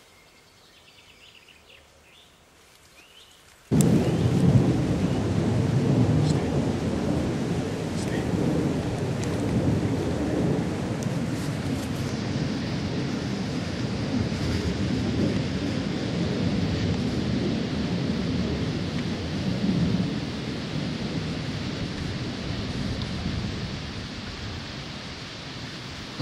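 Wind buffeting the microphone: a loud, low rushing noise that starts abruptly about four seconds in and slowly eases toward the end. Before it there is only faint quiet.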